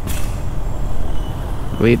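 Steady low rumble of a motorcycle engine with wind noise on the rider's camera microphone as the bike rolls slowly, and a brief hiss right at the start.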